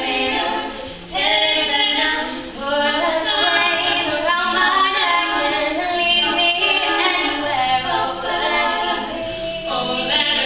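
Female a cappella group of four voices singing in harmony, with no instruments, with two brief dips about one and two and a half seconds in.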